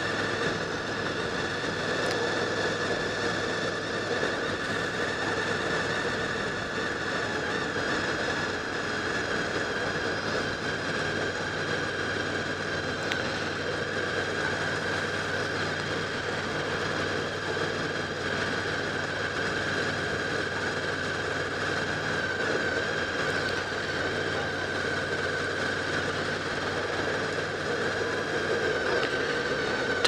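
Honda VFR800's V4 engine running at a steady cruising speed, one even note with wind and road noise, heard from a helmet-mounted camera.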